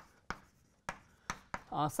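Chalk writing on a blackboard: about five short, sharp taps and scrapes as letters are stroked on. A man's voice starts near the end.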